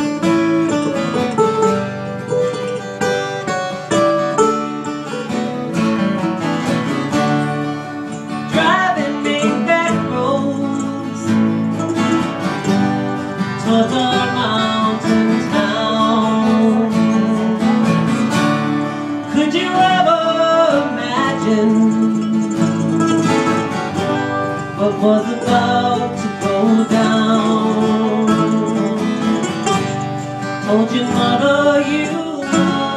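Live acoustic folk music: acoustic guitars and a smaller plucked stringed instrument playing a song together.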